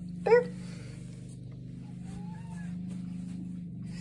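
Steady low purring of a cat eating canned food close to the microphone, with one faint short rising call about two and a half seconds in.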